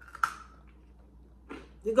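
A single sharp crunch as a crisp almond biscotti is bitten, about a quarter second in. A woman's voice resumes near the end.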